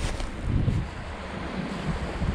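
Wind buffeting the microphone in uneven gusts, over a steady hiss.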